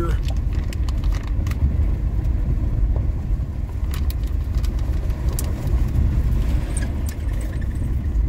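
Car cabin road noise on a gravel road: a steady low rumble of tyres rolling over gravel with the engine pulling in low gear, and scattered clicks of stones striking the car.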